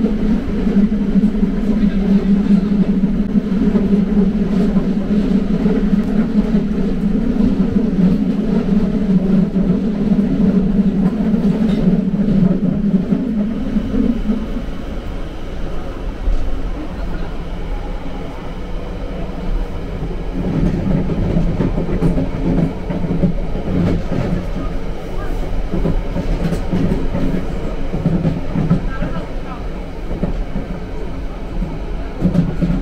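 Cabin sound of a London Underground Central line 1992 Stock train under way, with the rumble and clatter of the wheels on the track. A steady low hum runs through the first half and drops away about halfway through, leaving the rougher rolling rumble.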